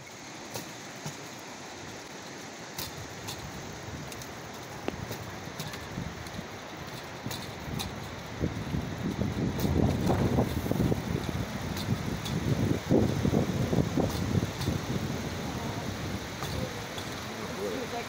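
Rail bike rolling along steel rails: a steady rolling rumble with scattered sharp clicks. The rumble grows louder and gustier about halfway through.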